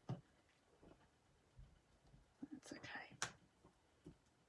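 Near silence with faint handling of card and a thin metal die: a light tap at the start and another a little over three seconds in, just after a brief soft whisper-like murmur.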